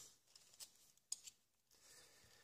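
Near silence with a few faint, short clicks of small metal hard-drive parts being handled, the sharpest about a second in.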